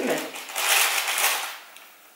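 Baking paper crinkling and rustling for about a second as the contact grill's top plate is lowered and adjusted over it.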